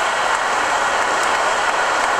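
A steady, fairly loud rushing noise with no distinct events, filling the pause in speech.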